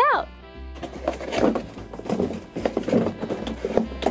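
A toy box being unwrapped and opened, with irregular crinkling and rustling of plastic wrap and cardboard packaging, over background music.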